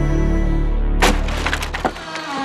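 Logo sound effect: a low sustained drone, then about a second in a sudden sharp crack and a quick run of splintering crackles lasting just under a second.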